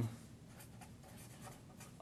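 Felt-tip marker writing on paper: faint scratchy strokes of the tip across the sheet as a word is written.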